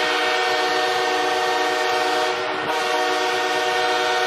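Arena goal horn blaring to mark a home-team goal: one long, steady, loud blast with a brief dip about two and a half seconds in, then it sounds on.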